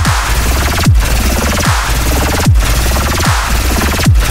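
Riddim-style dubstep at 150 BPM: a loud, dense electronic bass line with a deep kick drum, whose pitch drops sharply, landing about every 0.8 seconds.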